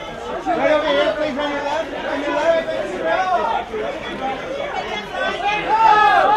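Many voices calling out and chattering over one another, too mixed for clear words: photographers shouting for a posing subject's attention. Louder near the end.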